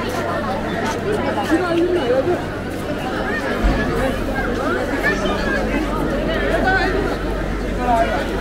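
Crowd chatter: many people talking at once, voices overlapping at a steady level. A low steady rumble joins in about halfway through.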